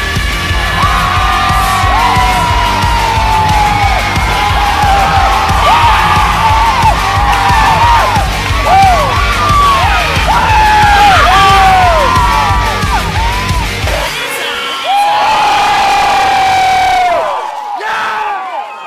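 Music with a heavy, steady bass beat under a crowd cheering, yelling and whooping. The beat drops out about 14 seconds in, leaving the cheering and a long held yell.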